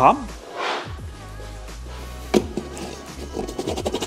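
Soft background music with a steady bass line, and a single knock a little over two seconds in.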